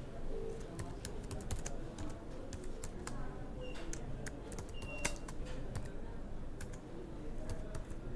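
Typing on a computer keyboard: uneven keystroke clicks, a few a second, over a low steady hum.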